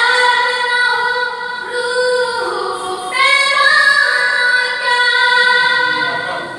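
A boy singing unaccompanied into a microphone, in long held notes that shift pitch a few times.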